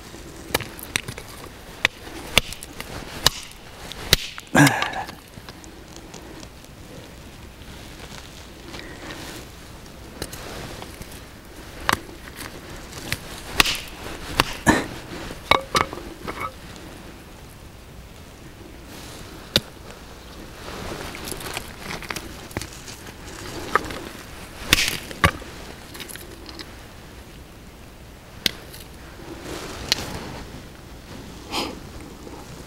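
Scattered sharp knocks and clacks of stone on stone, at irregular intervals, as a small sledgehammer strikes and breaks rocks and loose stones are handled.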